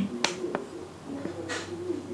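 Two sharp clicks about a third of a second apart, then a short soft hiss, over a faint steady low hum.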